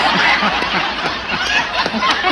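Theatre audience laughing, many voices at once.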